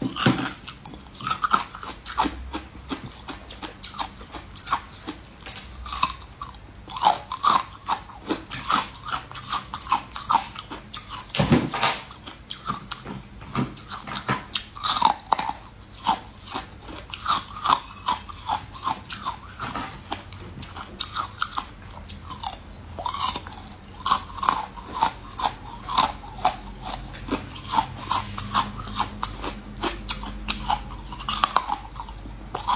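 Close-miked biting and chewing of soft, green layered flower-shaped cakes: a dense, uneven run of small clicks and crunches, with one sharper, louder bite about a third of the way through.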